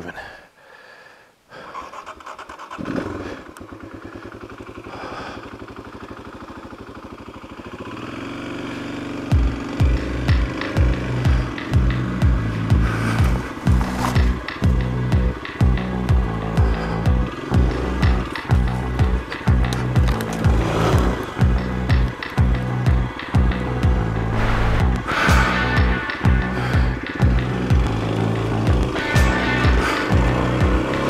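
Dual-sport motorcycle engine starting about three seconds in and running steadily; from about nine seconds, background music with a steady beat plays loudly over it.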